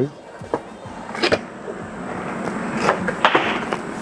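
Cardboard packaging being handled: the boxed MacBook Pro is lifted and slid against its brown cardboard shipping carton, giving a scraping rustle with a few light knocks.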